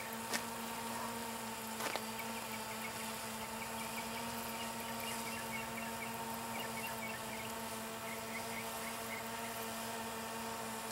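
DJI Phantom 2 quadcopter's propellers giving a steady hum from the air, holding an even pitch throughout, with a couple of faint clicks in the first two seconds.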